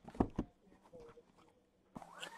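Sealed cardboard trading-card boxes being handled and set down on a table: two short soft knocks close together near the start.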